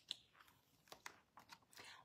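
Near silence with a few faint clicks and a soft paper rustle: a hardcover picture book's page being turned.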